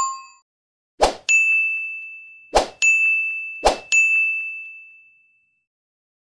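Sound effects for a subscribe-and-bell animation. A bell chime fades out at the start. Then come three sharp clicks, each followed at once by a bright bell ding that rings and fades, the last one dying away about a second before the end.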